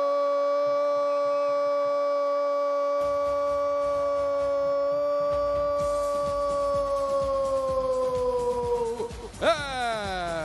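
Football commentator's long goal shout, 'Gooool', held on one steady high note for about nine seconds. Near the end it sags in pitch as his breath runs out, and he breaks off and launches a fresh rising shout. Background noise joins underneath about three seconds in.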